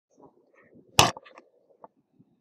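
A single sharp knock about a second in, then a few faint clicks and rustles: handling noise from the recording device being moved and bumped as the recording starts.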